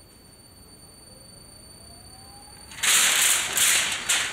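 Electric centrifugal blower spinning up with a faint rising whine, then, near the end, a sudden loud rush of air and rustling as a thin foil sheet is blown up and off the table.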